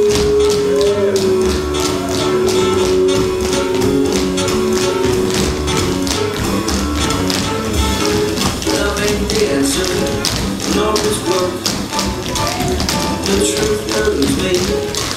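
Tap shoes of a group of tap dancers striking the stage floor in quick, rhythmic runs, over a recorded jazz-pop song. The music holds one long note for about the first six seconds, and the taps grow busier after that.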